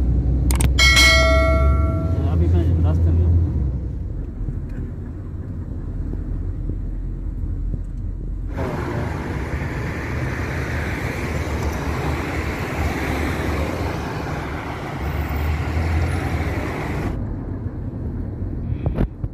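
Car travelling on the road, heard from inside: a steady low engine and road rumble, with a short ringing chime about a second in. About halfway through a louder, even rushing noise takes over and stops just before the end.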